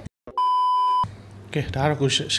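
A steady high electronic bleep, one flat tone about 0.7 s long, cutting in just after a brief dropout in the audio and stopping abruptly: a censor bleep laid over a spoken word. A man's speech picks up again about a second and a half in.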